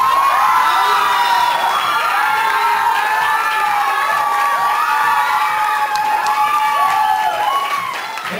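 Audience cheering and screaming in many high-pitched voices, loud and unbroken, cheering for a contestant just named in the results.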